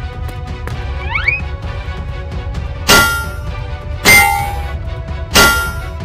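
Three loud metallic clangs of a crowbar striking a metal cash box, about a second or so apart, each ringing on briefly, over background music with a steady beat. A short rising whistle-like glide comes about a second in.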